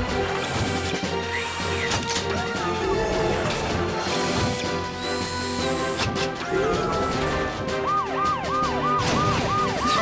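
Cartoon sound effects over upbeat background music: mechanical clanks and whooshes as a robot fire truck's ladder moves, then, near the end, a siren warbling up and down about three times a second.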